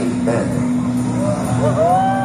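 A live rock band through a concert hall's PA holds a steady low drone. About a second in, a few pitched notes slide up and fall away as the song begins.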